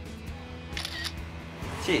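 A smartphone camera's shutter click, heard once about a second in, over background music.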